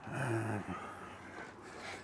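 A man's brief breathy vocal sound, low-pitched and about half a second long, near the start.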